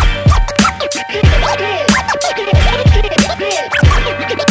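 Turntable scratching on a vinyl record over a boom-bap hip-hop beat: quick rising and falling scratch sounds cut against a steady, heavy kick-drum pattern.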